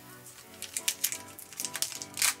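Soft background music, with light clicks and rustles of a foil booster pack being picked up and handled.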